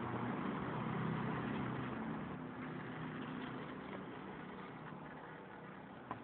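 A low, steady motor-like drone over a hiss; it swells about a second in and then slowly fades.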